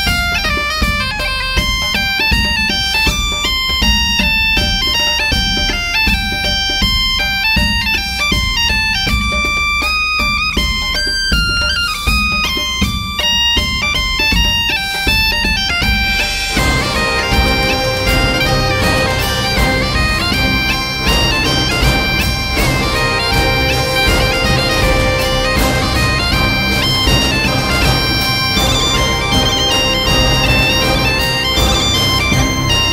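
Sampled high-pitched bagpipe (the ERA Medieval Legends "Bagpipe D" patch) playing a lively medieval-style melody with legato runs and ornaments over a steady drone. About sixteen seconds in the passage changes to a fuller, denser sound with the drone more prominent.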